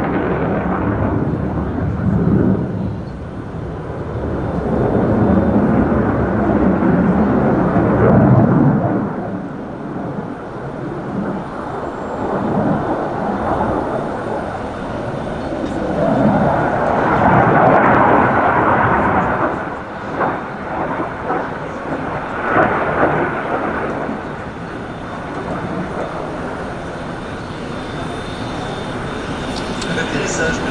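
Jet noise from the JF-17 Thunder's single Klimov RD-93 afterburning turbofan as the fighter flies display manoeuvres. A broad rumble swells and fades, loudest about five to nine seconds in and again just past the middle, with a little crackle after the second peak.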